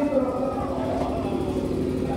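A chanted noha line ends through the microphone right at the start, then a pause filled with a steady low hum and continuous low rumbling background noise.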